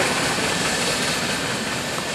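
Freight cars rolling past on the rails: a steady rumble of steel wheels on track, slowly fading.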